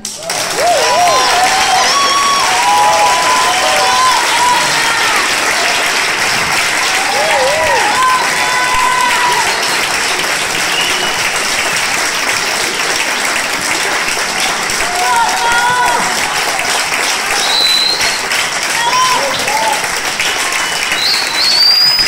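Audience applauding, steady and sustained, with voices calling out over it.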